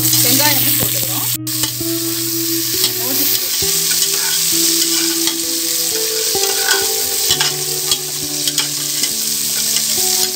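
Sliced onion and green chilli frying in hot oil with whole spices in an aluminium pressure cooker: a steady sizzle with small clicks and scrapes as they are tossed in and stirred. Under it run some low steady tones that change pitch every few seconds.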